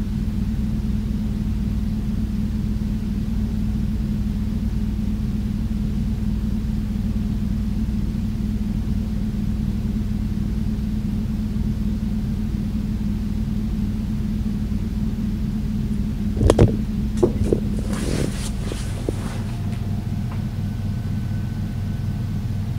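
Steady low rumble and hum from a room air-conditioning unit running, loud enough to be taken at first for an earthquake. A sharp knock comes about three-quarters of the way through, followed by a few smaller clicks.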